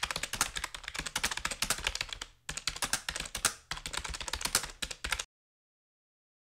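Rapid typing on a computer keyboard: a fast, dense run of key clicks. It breaks briefly a little after two seconds and again around three and a half seconds, then stops abruptly about five seconds in.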